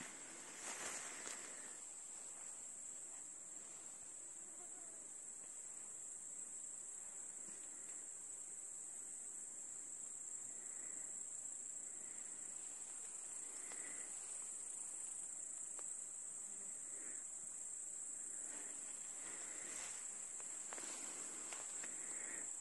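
A faint, steady, high-pitched chorus of grasshoppers chirring in meadow grass, with brief rustling near the start.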